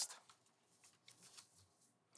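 Near silence: room tone with a few faint, brief rustles of paper notes being handled at a lectern.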